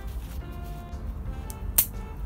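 New bonsai pruning shears snipping through a young Japanese maple branch: a faint snip and then one sharp click near the end, over steady background music.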